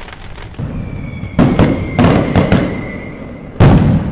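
Fireworks bursting: a run of sharp bangs, each with a deep rumbling tail. Several come close together in the middle, and a loud burst comes near the end. A thin steady whistle sounds through the middle.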